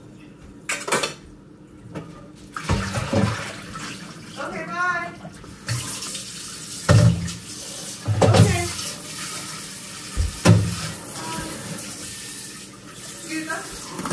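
Kitchen faucet's pull-down sprayer running water into a stainless sink as dishes are rinsed; the water comes on a few seconds in. Dishes and a pot knock against the sink and each other several times, the loudest clanks about seven, eight and ten seconds in.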